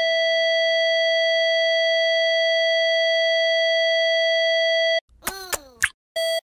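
Steady electronic test-card tone, one unchanging mid-pitched beep held for about five seconds, then cut off abruptly. Near the end comes a short sound whose pitch slides downward.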